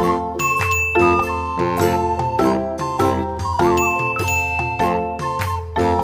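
Background music: a light tune with chiming, bell-like notes over a steady beat and bass line.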